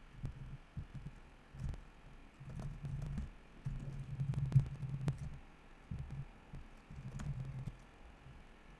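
Typing on a computer keyboard: irregular keystrokes in short runs, heard as soft clicks over dull low thuds.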